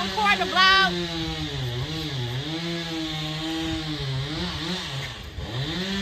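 A small engine running steadily in the background, its pitch sagging and wavering, dropping briefly about five seconds in, then coming back up to a steady note.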